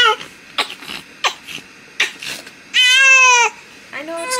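Newborn baby crying in short, angry bursts, with one longer, loudest cry about three seconds in: a newborn getting mad as he waits to be fed.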